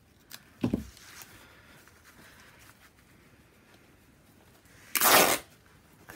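Linen fabric torn by hand: one short, loud ripping sound about five seconds in, after a soft knock near the start. The tear does not go where it was meant to, so the fabric will be cut instead.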